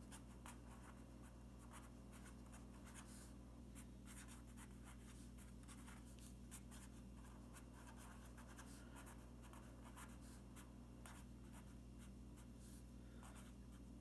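Faint scratching of a pen writing on paper, a steady run of short strokes, over a low steady hum.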